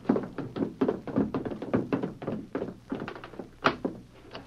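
Quick footsteps, a radio drama sound effect, about four or five steps a second, with one sharper knock near the end.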